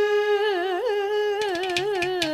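A female Carnatic vocalist holds a long steady note, then breaks into rapid wavering gamaka ornaments. Crisp percussion strokes from the mridangam and ghatam come in about two-thirds of the way through.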